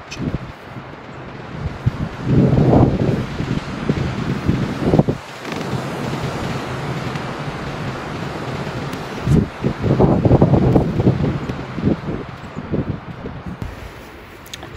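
Wind buffeting the microphone, a rough rumbling noise that swells into strong gusts a couple of seconds in and again about ten seconds in.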